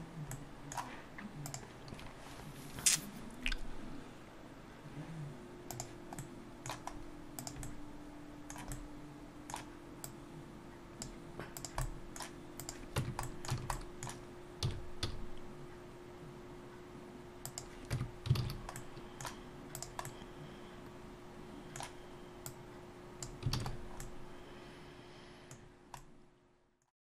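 Computer mouse buttons and keyboard keys clicking irregularly, with a faint steady hum underneath from about five seconds in.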